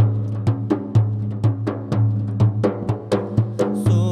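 Hand-struck frame drums (bendir/daf) playing a quick, even rhythm in an instrumental break, over a steady held low note.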